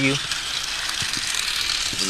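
Trackmaster Ferdinand battery-powered toy engine running around its plastic track, a steady mechanical rattle of its motor and gears.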